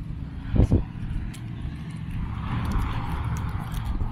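A car passing along the street, its tyre noise swelling from about a second and a half in and holding through the rest. Under it come the walker's footsteps on the concrete sidewalk, a couple of thuds just under a second in.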